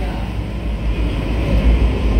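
Steady low rumble of background noise with a faint hiss above it.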